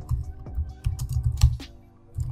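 Computer keyboard typing: a quick, irregular run of keystrokes that thins out near the end, over steady background music.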